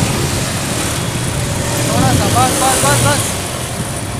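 Motorcycle engine running steadily at low speed with wind and road noise as the bike rolls along. A child's high voice calls out briefly around the middle.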